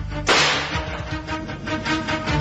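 A single pistol shot: one sharp crack about a quarter second in that dies away within half a second, over background music with a steady beat.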